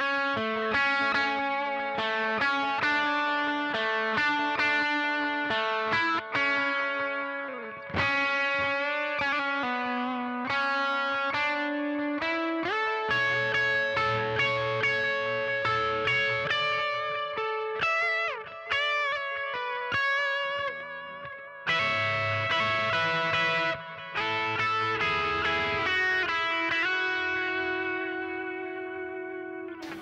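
Electric guitar playing a slow, melodic lead solo through some effects: single sustained notes, with a few slides and a note held with vibrato about two-thirds of the way through.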